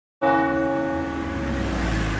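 A large bell struck once a moment in and left ringing: a deep, sustained tone over a low hum.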